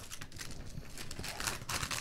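Thin plastic packaging crinkling and rustling in the hands, a run of small irregular crackles, as a cut-open bag is handled and a booklet is slid out of it.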